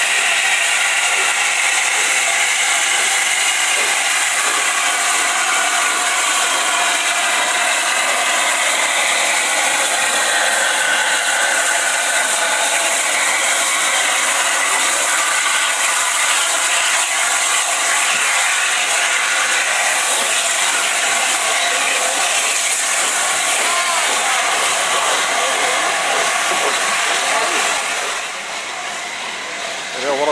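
Steam hissing steadily and loudly from an LNER A4 class steam locomotive close by. The hiss drops away a couple of seconds before the end.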